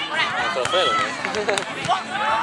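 Several people's voices overlapping, with calls and chatter from around a beach volleyball court, and a few sharp taps among them.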